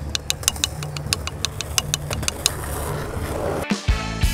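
Drumsticks tapping out a right-left sticking pattern as a drum practice exercise, about five quick taps a second, stopping about two and a half seconds in. Background music comes in near the end.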